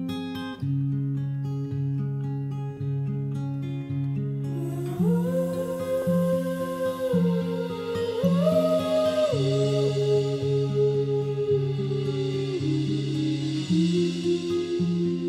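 Background music: the instrumental opening of a song, a repeating picked guitar pattern, joined about five seconds in by a sustained melody line that slides between notes.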